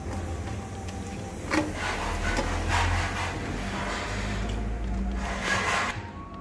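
Boiled rice tipped from a steel bowl into a steel pot, then scraped out and spread, giving a run of soft rubbing and scraping noises that swell a few times, over a low steady hum.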